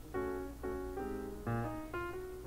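Background piano music, with a new chord or note group struck about every half second.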